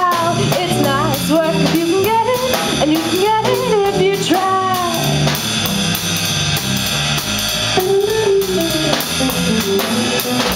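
A live rock band playing: a female voice singing over electric guitar and a Gretsch drum kit. The singing drops out about halfway, leaving the band playing alone, and returns near the end.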